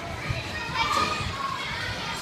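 Children playing and calling out in a large echoing hall, distant voices over a general hubbub with low thuds of bouncing.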